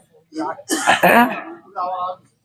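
A man's voice at a microphone making unworded vocal sounds, with a rough, breathy, throat-clearing-like burst about a second in and a short voiced sound near the end.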